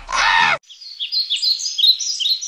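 A woman's brief laugh, cut off about half a second in, then birds chirping: a run of short, high, downward-sliding chirps.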